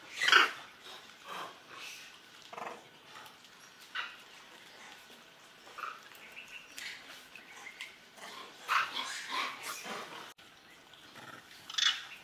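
Macaques giving short, harsh calls in separate bursts, one with its mouth wide open in a threat face; the loudest call comes just after the start, with a cluster of calls around nine seconds in and another near the end.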